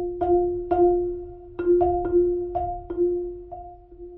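Solo marimba played with soft yarn mallets: the same note struck about nine times at uneven intervals, each stroke ringing and fading. The strokes stop shortly before the end and the last note dies away.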